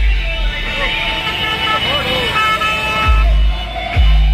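Deep, loud bass from a DJ truck's sound system stops about half a second in, leaving crowd voices and shouting. The heavy bass beat comes back in pulses about three seconds in.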